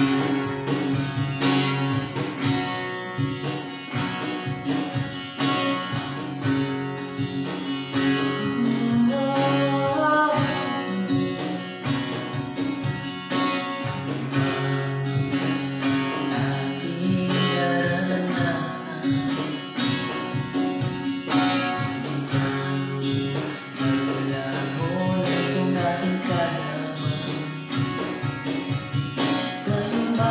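Acoustic guitar strumming in a steady rhythm, accompanying a man and a woman singing a song in Tagalog.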